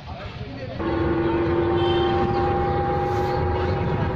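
A steady, unchanging tone with several overtones sets in about a second in and holds, over the low rumble of an open electric shuttle bus moving off.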